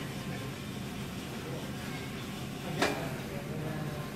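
A tire pressure gauge pressed onto a wheel's valve stem, giving one short sharp click-hiss about three quarters of the way through, over a steady low hum.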